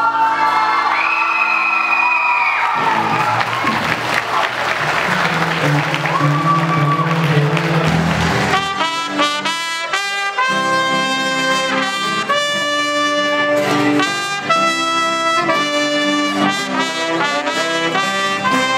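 Live band music with a broad noisy wash over it, which gives way about nine seconds in to a trumpet playing a melody over acoustic guitar chords.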